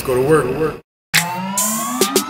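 A brief wavering voice, then a sudden total drop-out of sound for about a third of a second, followed by a steadily rising synthetic tone sweep, a transition effect in an edited hip-hop soundtrack.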